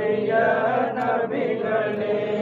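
Men's voices chanting a Sufi devotional song together, with long held notes.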